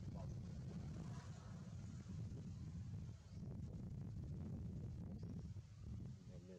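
Steady low wind rumble on the microphone.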